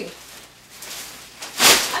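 A large cape being swept through the air: a faint rustle, then a short, loud swish of the cape's fabric near the end.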